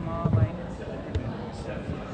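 Indistinct room chatter with dull thumps, a heavier one about a quarter second in and a short knock just after a second, from microphones being handled on a podium during setup.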